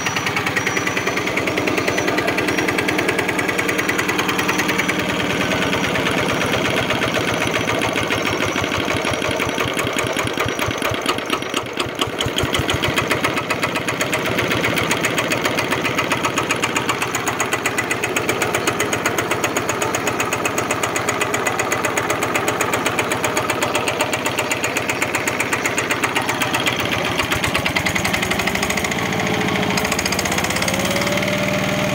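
Mitsubishi 11 horizontal single-cylinder diesel engine running steadily with an even chug of firing strokes. Near the end its pitch rises as the throttle lever is worked and the engine speeds up.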